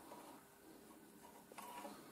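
Near silence: room tone with faint handling noise of jumper wires held in the fingers, and a faint tick about a second and a half in.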